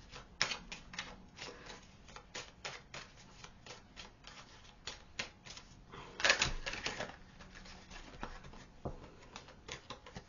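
A deck of oracle cards being shuffled by hand off camera: a run of quick, papery card clicks and slaps, with a louder flurry about six seconds in.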